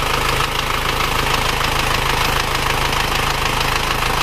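Isuzu Panther's four-cylinder diesel engine idling steadily, not yet at full working temperature (about 74 °C at the thermostat housing).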